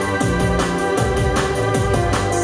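Live synth-pop band music: sustained organ-like keyboard synth chords and electric bass over a programmed drum beat ticking about four times a second, with no vocals at this point.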